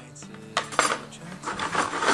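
Metal meat hooks clinking against each other in a plastic bucket as they are stirred by hand, with a few sharp clinks about half a second in and more in the second half. They are being disinfected in boiling water before they hold meat.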